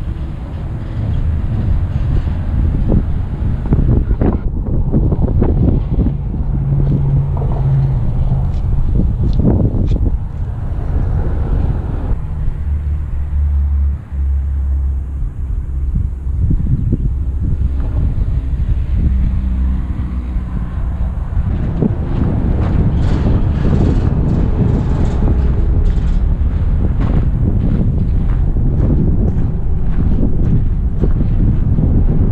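Wind buffeting the microphone in gusts, over the low rumble of traffic on a highway bridge, with now and then a passing vehicle's drone.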